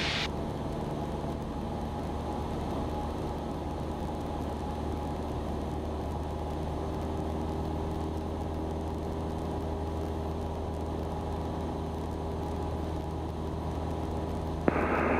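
Cessna 172's piston engine and propeller running steadily in flight, heard inside the cabin as an even, low drone.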